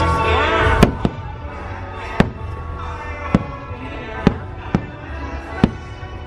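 Fireworks bursting in about seven sharp bangs, roughly one a second, the loudest a little under a second in. Show music plays under them, loud at first and then dropping back.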